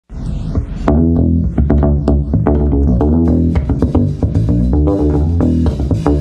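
Electric bass guitar playing a funky groove with a drum kit, the snare cracking between the bass notes. The whole mix is heavily compressed, so it sounds dense and even in level.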